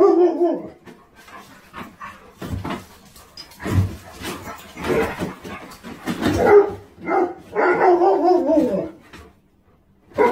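Two dogs barking and vocalizing in rough play, in a string of short bursts that die away near the end.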